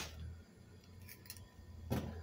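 Faint short clicks of a plastic bouillon-powder jar being handled, over a low steady hum.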